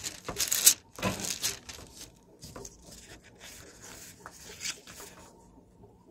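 Pages of a Bible being leafed through, rustling close to a pulpit microphone. The rustling is loudest in the first second and a half, thins out, and stops about five seconds in.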